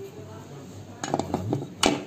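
Metal skimmer-ladle knocking and scraping against a kazan cooking pot while food is scooped out: a quick run of clinks about a second in, then one louder clank near the end.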